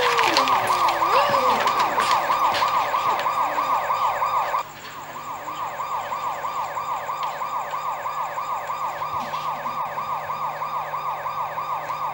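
Police siren in fast yelp mode: a quick rising whoop repeating about five times a second, steady in pitch. It drops in level about halfway through and carries on quieter.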